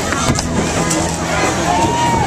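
Street parade sound: crowd voices and calls mixed with music, and a pickup truck towing a float trailer passing close by.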